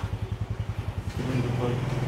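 A small engine idling with an even low pulse, about nine beats a second, which settles into a steadier hum about a second in.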